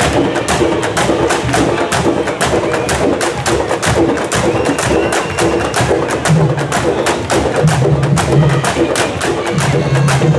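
A candombe drum section playing: many chico, repique and piano drums beaten with stick and hand. Rapid sharp stick strokes lie over deep pulsing notes from the piano drums, which come through stronger in the second half.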